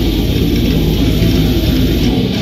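A heavy metal band playing loudly live: distorted electric guitars and bass guitar over rapid, even drumming.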